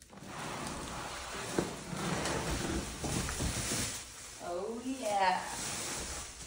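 Plastic bag wrapping and cardboard box rustling and crinkling as an electric unicycle is pulled out of its packaging. Near the end comes a short wordless vocal sound.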